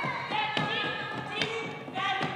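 Group of women's voices singing together in harmony, accompanied by a few strokes on hand-struck wooden drums; the strongest stroke comes about one and a half seconds in.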